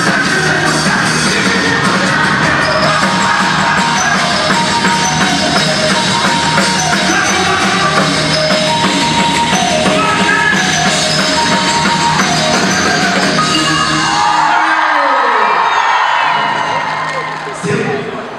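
Live rock band playing through a PA system, with sung vocals and drum kit, in a large indoor atrium. The song ends about fifteen seconds in and a crowd cheers and screams.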